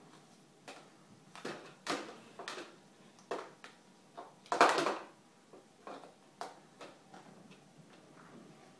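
Plastic bowls and toys knocking and clattering on a high-chair tray as a baby handles and bangs them: a string of irregular knocks, the loudest about four and a half seconds in.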